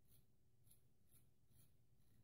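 Faint, crisp scratching of a vintage full-hollow-ground straight razor cutting through lathered stubble, on a with-the-grain pass: four short strokes, roughly half a second apart.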